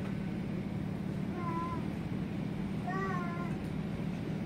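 Two short, high-pitched, wavering vocal calls, about a second and a half apart, over a steady low hum.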